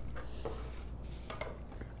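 Hands pressing and smoothing a glued chipboard panel and paper flat on a wooden tabletop: quiet rustling of paper with a few light taps.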